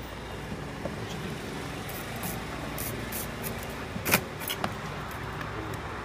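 Steady low background rumble with a sharp knock about four seconds in and a fainter click just after: a kitchen knife cutting through crab-leg shell onto a plastic cutting board.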